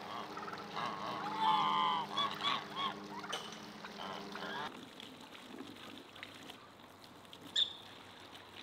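Domestic geese honking, several calls in the first half, loudest about a second and a half to two seconds in. After that it goes quieter, with a single sharp click near the end.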